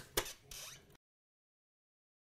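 A single sharp click and a moment of faint rustling, then dead silence from about a second in as the soundtrack ends.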